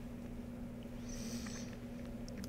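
Quiet room tone with a steady hum, and a faint brief hiss about a second in.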